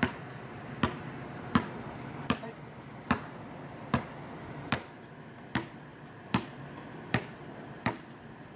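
A backing track's sparse beat: sharp snap-like clicks at an even pace, about five every four seconds, over a faint steady background.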